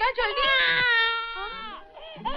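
Newborn baby crying: a few short wails, then one long, high wail that fades away near the end.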